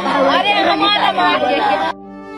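Several women wailing and crying out in grief, voices overlapping, cut off abruptly near the end as slow cello music begins.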